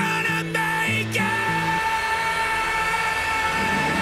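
Music from a hip-hop track after the rapped line ends: one long held high note runs through, over a few low bass notes that stop about two seconds in.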